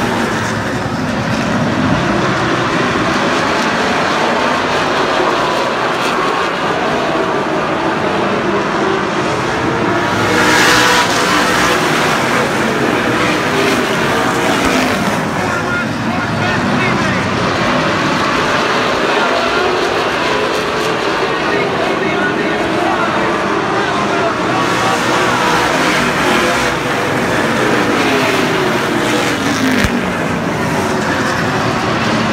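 A pack of late model stock cars racing with their V8 engines at full throttle. The pitch rises and falls as the cars sweep past, and the sound is loudest about ten seconds in.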